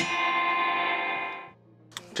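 A rock band's last chord ringing out on electric guitar after the playing stops, fading away to near silence after about a second and a half.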